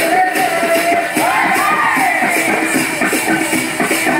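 Tappeta gullu devotional folk music: a wavering melody that rises and falls over steady rhythmic drumming and jingling percussion.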